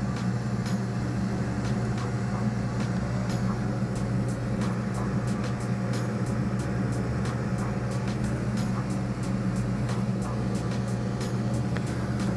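Steady roar of a glassblowing bench torch flame heating a borosilicate glass tube, over a low, even hum, with faint scattered ticks.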